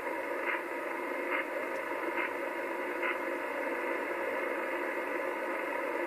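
Static hiss from a Kenwood TS-850S HF transceiver's speaker while it receives upper sideband on 27.585 MHz with no station talking. The hiss is steady, with a few faint brief swells in the first three seconds.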